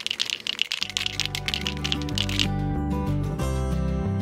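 Aerosol spray paint can being shaken, its mixing ball rattling in quick clicks that stop about two and a half seconds in. Background music comes in about a second in and carries on.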